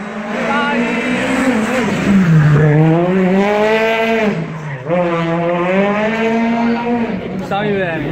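Rally car engine revving hard on a tight street stage. Its pitch climbs and then drops sharply about two seconds in, again at about five seconds, and once more near the end.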